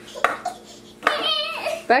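A short knock near the start, then a toddler's high-pitched vocal sound lasting most of a second, its pitch bending.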